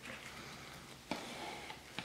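Quiet handling: a soft knock about a second in and a fainter one near the end as a gloved hand moves a plastic mixing cup on a rubber bench mat.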